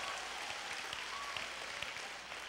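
Faint, scattered applause from an audience in a hall: many light claps at a steady low level.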